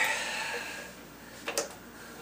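Small gear puller being fitted onto a drill-press pulley: a short ring fades away in the first second, then the puller's steel jaws click against the pulley a couple of times about one and a half seconds in.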